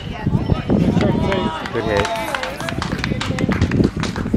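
Several voices shouting and calling out over one another after a hit, with a drawn-out yell near the middle, and some short knocks and claps among them.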